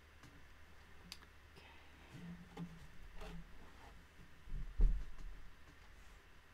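Small scattered clicks and taps from hands working weft yarn through a tapestry loom's warp and handling a pointed weaving tool, with one louder dull thump just before the end.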